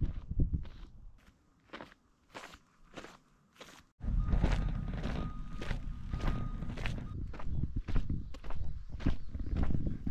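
Footsteps of 3D-printed flexible TPU mesh slip-on shoes. For the first four seconds they are faint and distant on a gravel path; after that they are close and louder on a paved path, at about two steps a second.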